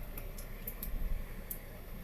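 Low, steady rumble inside the cabin of a Mercedes car moving slowly, with a few light, irregularly spaced clicks.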